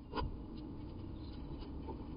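A wren's feet scratching on the wooden floor and walls of a nest box, with one sharp tap shortly after the start and a few faint ticks after it, over steady low background noise.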